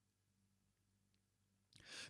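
Near silence: room tone, with a faint intake of breath near the end.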